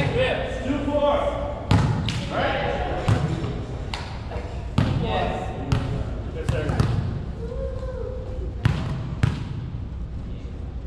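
Volleyball being hit and bouncing on a hardwood gym floor: about nine sharp slaps, irregularly spaced. Players' voices are heard faintly between them.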